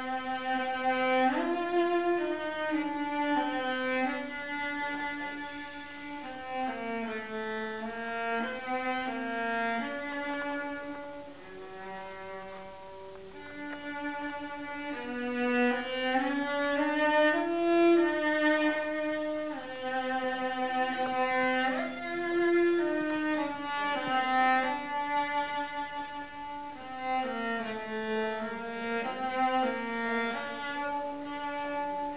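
Solo cello bowing a melody, one note at a time with each held about half a second to a second. It grows quieter around the middle and then swells again.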